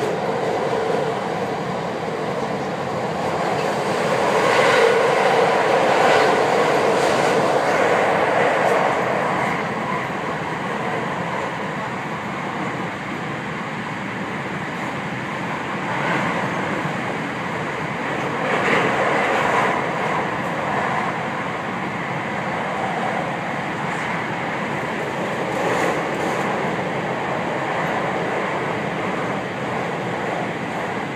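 Cabin running noise of a JR West 521 series electric train on the move, heard inside the passenger car: a steady rail rumble that swells louder about four to nine seconds in and eases and rises again a few times after that.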